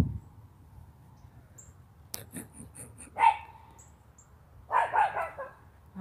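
A small dog barking: one sharp bark about three seconds in and a short run of barks near the end, with a few faint clicks just before the first bark.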